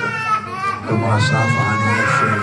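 Overlapping voices in a crowded room: a high voice drawn out in long held notes that bend in pitch, with lower voices underneath.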